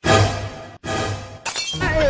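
Glass-shattering sound effect, played twice in quick succession: each crash starts suddenly and rings away, the second coming just under a second after the first.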